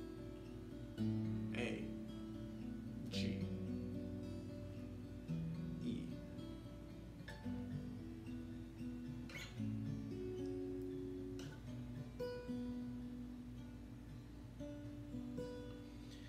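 Steel-string acoustic guitar playing a slow chord progression in B minor, the notes of each chord picked one after another and left to ring, the bass note changing from chord to chord.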